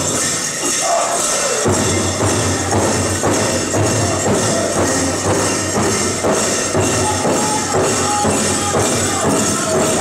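Powwow drum group's big drum beating a steady pulse under the song, with a bright jingle of dancers' bells over it. The low drumbeat drops out for the first second or so, then comes back in. Held sung notes build up near the end.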